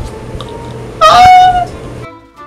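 A short high-pitched vocal squeal about a second in, sliding down and then held on one pitch for about half a second.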